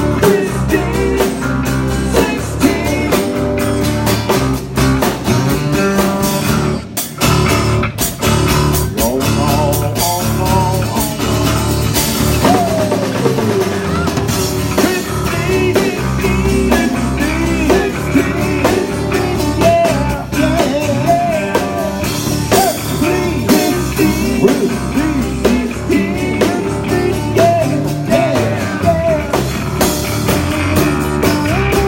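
A rock band playing live on acoustic guitars, electric bass and a drum kit, with a lead melody of bending notes over a steady beat.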